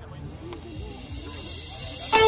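A white-noise riser in the dance track: a hiss that swells steadily over about two seconds, building into the start of the music, played over loudspeakers. Faint crowd chatter sits underneath.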